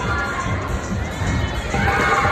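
Crowd noise echoing in a large gym hall: children shouting and cheering.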